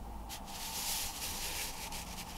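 Pen scratching across paper as a circle is drawn around the slot of a rotating plastic circle stencil. The steady rubbing starts about a third of a second in and fades just before the end.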